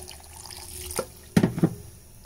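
Water poured from a glass into a stainless-steel mixer-grinder jar onto coconut pieces and whole spices, adding a little water before grinding. A click about a second in and a couple of knocks about a second and a half in are the loudest sounds.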